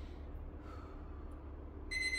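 A low steady room hum, then near the end a phone's timer alarm starts sounding with a high electronic tone, marking the end of the timed stretch.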